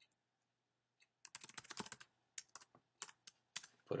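Typing on a computer keyboard: after a second of quiet comes a quick run of keystrokes, then a few scattered single keypresses.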